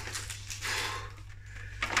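Plastic ready-meal tray with a film lid being handled and turned in the hand, a faint crinkling rustle of plastic.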